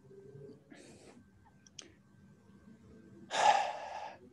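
A man breathing out close to the microphone: a faint breath about a second in, then a loud sigh near the end, with a small click between them.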